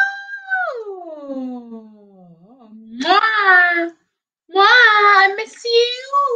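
A woman's voice making wordless, drawn-out vocal sounds: one long exclamation that slides down in pitch over about two seconds, then two shorter, high, sing-song outbursts.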